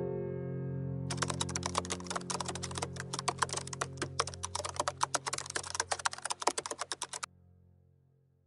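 Computer keyboard typing sound effect: a rapid run of keystroke clicks starting about a second in and stopping suddenly near the end. Soft sustained piano music fades away underneath.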